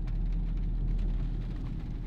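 Ford pickup truck driving, heard from inside the cab: a steady low engine hum with road and tyre noise.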